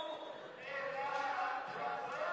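Indistinct voices echoing in a large sports hall, fading briefly early and picking up again after about half a second.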